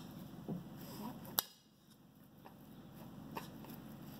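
Spoon stirring a chunky salad in a ceramic mixing bowl, soft and faint, with one sharp clink of the spoon against the bowl about a second and a half in.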